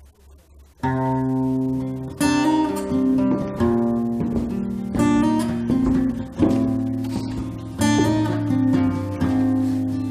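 Acoustic guitar played solo, coming in about a second in: chords struck about every second and a half, each left to ring into the next.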